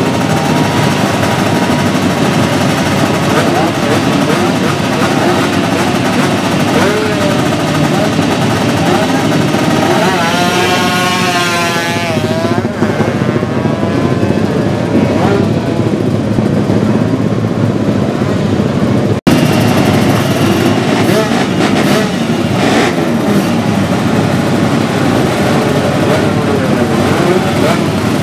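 Loud, continuous sound of modified drag-race motorcycle engines revving and accelerating hard. About ten seconds in, an engine's pitch rises and falls. Two-thirds through, the sound cuts out for an instant.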